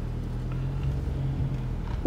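Car engine and cabin rumble, heard from inside the car as it moves slowly into a parking spot: a steady low hum that drops away near the end.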